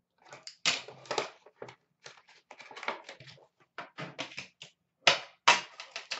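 Hands opening an Upper Deck Premier hockey card tin and lifting out the box inside: a run of irregular clicks, taps and scrapes, the loudest two sharp ones about five seconds in.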